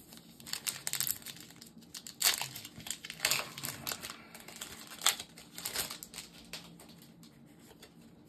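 Foil wrapper of a Pokémon TCG booster pack crinkling and tearing as it is opened, in an irregular run of crackles with a few louder rustles.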